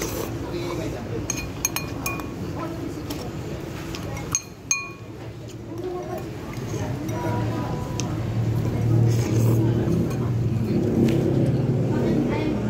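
Metal spoon clinking against a ceramic bowl several times, in short ringing taps, the two loudest about four and a half seconds in.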